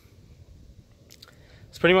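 A pause with faint low background noise and a few soft clicks, then a man's voice starts speaking near the end.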